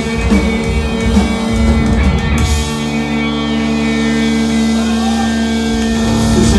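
Rock band playing with distorted electric guitars, bass and drums; a little before halfway through the drums drop out and a chord is held and rings on steadily.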